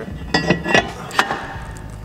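Metal clinks and taps as a new cross-drilled, slotted brake rotor is slid over the wheel studs onto the hub, about four sharp clinks in the first second and a half.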